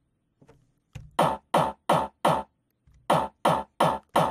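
A short, punchy sampled top kick drum, high-pass filtered at about 300–400 Hz so its low end is cut away, played back solo through studio speakers and picked up by a microphone. Two runs of four quick hits, each a short falling thump with a thin, bass-less body.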